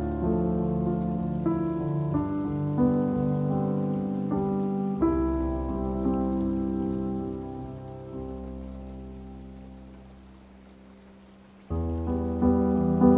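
Solo piano playing slow, gentle chords that ring on. About halfway through, a chord is held and slowly fades away, then a new chord is struck just before the end.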